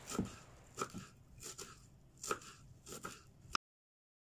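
Kitchen knife chopping leafy herbs on a wooden cutting board: irregular knocks of the blade on the board, some in quick pairs. The sound cuts off abruptly about three and a half seconds in.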